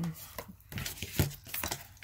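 Oracle cards being drawn and handled by hand: a few short snaps and slides of card stock.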